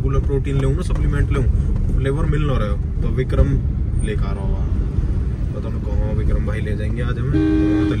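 Men talking inside a moving car's cabin, over a steady low rumble of engine and road noise. Near the end a steady pitched tone is held for under a second.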